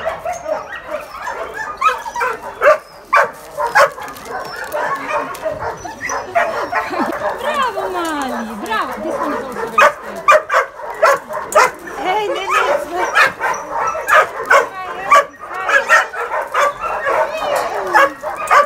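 Several young dogs yipping, whining and barking excitedly, with many short sharp yaps and wavering whines, as they beg for treats held out by hand. A longer whine falls in pitch about eight seconds in.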